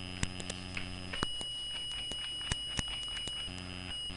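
A steady high-pitched whine and a low hum from the recording setup, with a few short, faint clicks of a computer keyboard and mouse as a page number is typed in.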